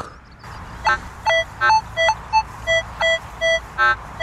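Minelab metal detector giving target tones as its coil sweeps over the ground: a run of short beeps, about three a second, starting about a second in, mostly at one low pitch with a few higher ones and a couple of quick broken chirps.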